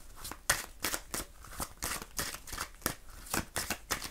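A deck of oracle cards being shuffled by hand: an irregular run of short card clicks, several a second.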